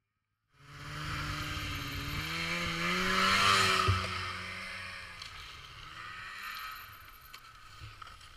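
Snowmobile engine pulling under load, starting suddenly about half a second in, its pitch and loudness rising to a peak about three and a half seconds in and then easing off, over a steady hiss of the machine moving through snow.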